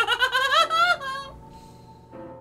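A man laughing: a loud, wavering giggle that climbs in pitch and breaks off about a second in. Faint orchestral film music continues underneath.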